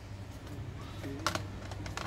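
HP 650 G2 laptop's plastic bottom cover being set onto the chassis and pressed into place: a few plastic clicks and taps, the loudest about a second in, over a low steady hum.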